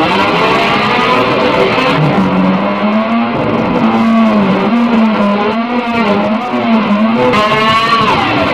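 Electric guitar instrumental: a lead line of bending, wavering notes over a long held low note, with a quick rising slide near the end.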